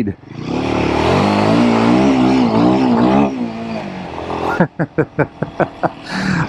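Royal Enfield Himalayan 452's single-cylinder engine under hard acceleration: the note climbs and wavers for about three seconds, loud enough that the rider jokes it will rile the locals, then eases off. A man laughs near the end.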